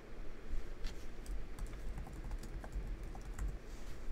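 Typing on a computer keyboard: an irregular run of quick key clicks as a search word is typed.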